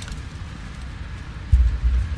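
Wind buffeting the microphone: a low rumble that gusts up sharply about a second and a half in, with a faint click at the same moment.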